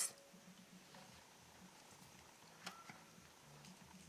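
Near silence: room tone, with one faint short tick about two-thirds of the way through.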